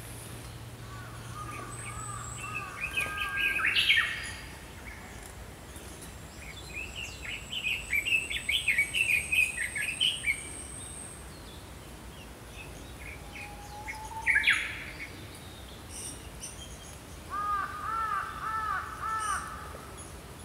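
Small woodland birds singing and calling. Several birds are heard: a loud sharp call about four seconds in and again about fourteen seconds in, a run of quick chirps in the middle, and a series of repeated arching whistled notes near the end.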